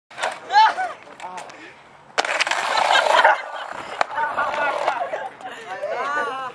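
Skateboard deck stomped on asphalt by teenage boys: a few knocks, a loud clattering stretch of about a second, and one sharp crack about four seconds in as the deck breaks, with the boys yelling throughout.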